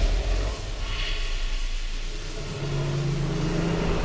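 Magic-energy sound effect: a loud, steady low rumble, joined about two and a half seconds in by a held hum of low tones.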